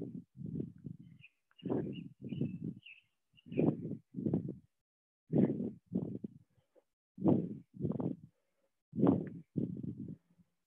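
A person breathing hard in a steady rhythm during air squats, an in-and-out pair of breaths about every two seconds, one pair per squat. A few faint bird chirps can be heard in the first few seconds.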